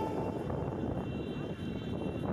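Steady engine and road noise of a car driving, heard from inside the cabin.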